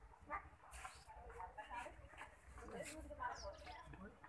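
Faint, indistinct chatter of several people, with a few brief high chirps among it.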